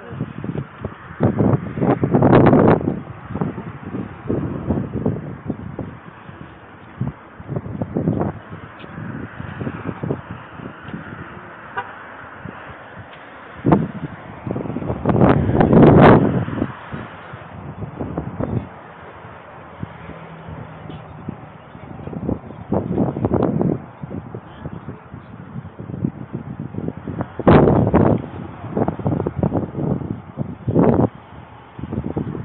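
Wind buffeting and handling noise on a handheld camera's microphone while walking outdoors. It comes as irregular loud rumbling gusts, the biggest about two seconds in, around sixteen seconds in and near the end.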